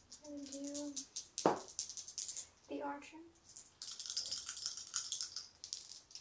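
Gaming dice clicking and rattling in a hand, with a dense run of rattling about four seconds in as the dice are shaken, and a single thump about a second and a half in.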